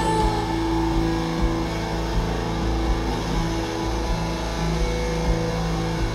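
Live rock band playing an instrumental stretch without vocals: held electric guitar notes ringing over a steady low bass.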